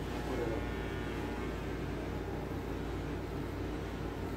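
Electric hair clippers running with a steady buzz while cutting short hair.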